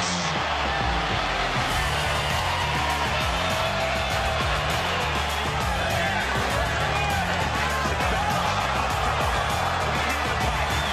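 Background music with a bass line that moves in steps, laid over the dense noise of a fight broadcast.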